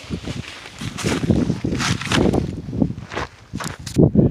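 Footsteps and rustling, with irregular bumps from the camera being handled close to the microphone.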